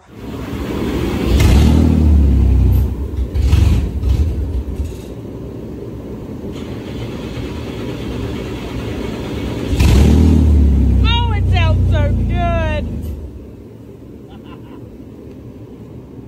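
A 2003 Infiniti G35's 3.5-litre V6 running through an aftermarket Spec-D exhaust that is missing one piece, which makes it louder than it should be. It is revved hard about a second in and again about ten seconds in, idles between the revs, and settles to a quieter idle near the end.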